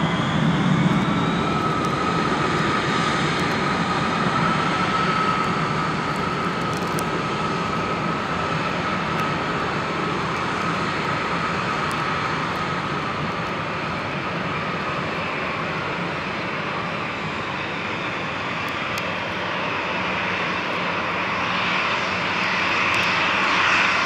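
Boeing 737 jet engines running at idle as the airliners taxi to the runway: a steady turbine rush with a thin high whine through it. It eases a little midway and builds slightly near the end.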